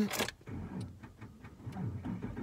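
A car engine being cranked by its starter and catching, rising in level near the end. The engine has been reluctant to start.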